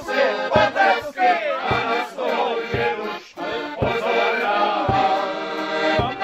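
A piano accordion plays a lively folk tune, with a bass drum struck on the beat about once a second.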